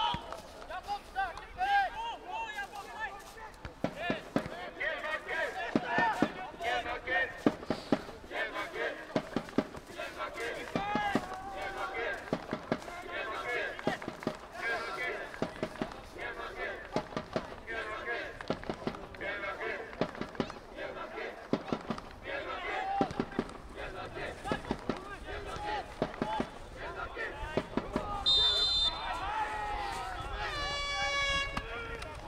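An amateur football match heard from the sideline: players' shouts and calls across the pitch, with the sharp knocks of the ball being kicked now and then. A brief high whistle sounds near the end.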